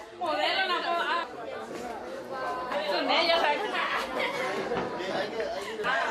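Several people chatting at once, their voices overlapping in lively conversation.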